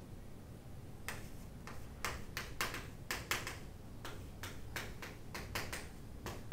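Chalk writing on a chalkboard: an irregular run of short, sharp taps and scratches as each stroke of the letters is made, starting about a second in.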